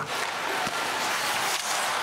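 Steady crowd noise in an ice hockey arena during game play.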